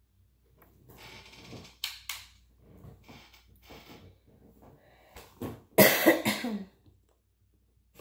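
A woman coughing and clearing her throat. The first sounds come about a second in, and the loudest cough comes near six seconds.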